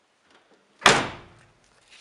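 The door of an Autobianchi A112 rally car slammed shut once, about a second in: a single loud bang that dies away within about half a second.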